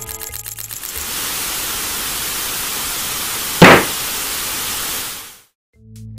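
Steady hiss of analog TV static, which takes over from fading music about a second in. Midway there is one sudden loud burst, and the hiss then fades out to silence near the end.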